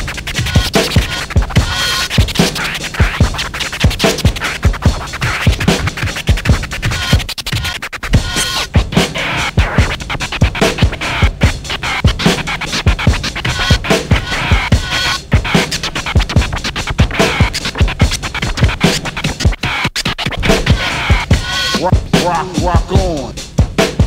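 Hip hop DJ track: turntable scratching cut over a steady drum beat, with no vocals.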